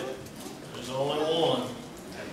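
Indistinct voices, with no clear words, loudest in the second half.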